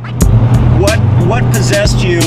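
Car engine in a Mustang built on a 2014 Shelby GT500 chassis, a steady low drone heard inside the cabin while driving, coming in just after the start.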